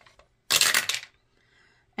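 Dice dropped into a wooden dice tower, clattering down through it for about half a second from half a second in, then settling with a faint rattle in the tray.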